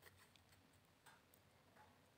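Near silence: quiet room tone with a few faint, irregular ticks.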